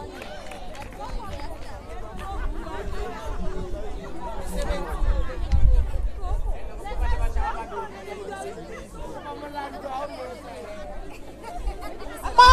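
Chatter of several people talking at once, overlapping voices with no single speaker, with some low rumble in the middle.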